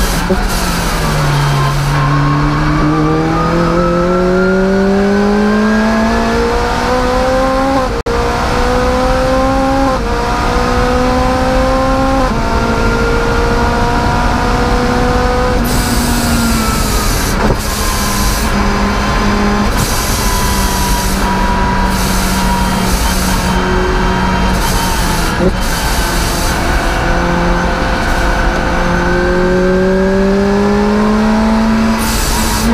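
Onboard engine sound of a Rotrex-supercharged Lotus Exige being driven hard on track. Its pitch dips briefly at the start, then climbs steadily with quick upshift steps about eight, ten and twelve seconds in. It then runs at a flatter, slowly falling pitch and rises again near the end.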